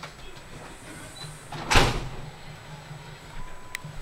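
Small handling sounds of hands working with paper craft pieces, with one brief rustling swish about two seconds in and a faint click near the end, over a steady low hum.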